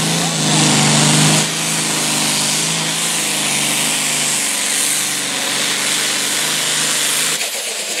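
Altered-farm John Deere pulling tractor's diesel engine running flat out as it drags a weight-transfer sled down the track: a steady, high-revving drone under a loud hissing rush. The engine drops off suddenly near the end as the run stops.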